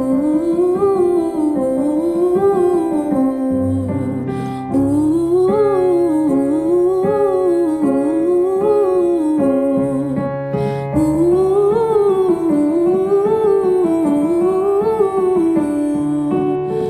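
A woman sings a vocal exercise on the syllable 'ooh', running short scales up and down over and over, about one up-and-down every second and a half, with sustained keyboard chords underneath. The singing breaks briefly about four and eleven seconds in as the chord changes and the pattern starts again.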